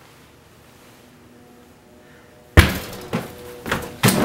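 A front door being kicked open: one sudden loud bang about two and a half seconds in, after a quiet stretch, followed by a couple of lighter knocks.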